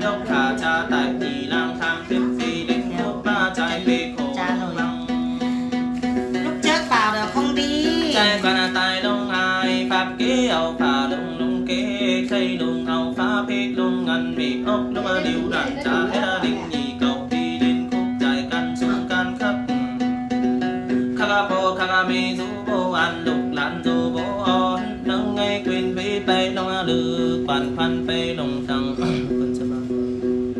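Đàn tính, the Tày long-necked gourd lute, plucked in a steady rhythm, accompanying a voice singing hát then ritual song.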